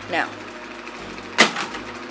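A single sharp knock about one and a half seconds in: a mini basketball striking the backboard of an over-the-door hoop on a shot that scores.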